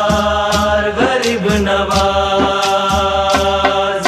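Devotional song music: long sung notes held steadily over a regular drum beat.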